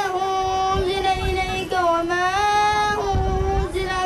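A boy chanting Quran recitation in Arabic into a microphone, drawing the words out in long held melodic notes, with a change of note about halfway through and again near the end.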